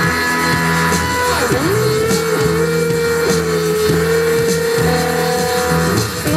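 Live electro new-wave rock band playing: synthesizer, electric guitars and bass, with a long held note that slides down in pitch and back up.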